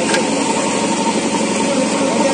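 JCB 3DX backhoe loader's diesel engine running steadily.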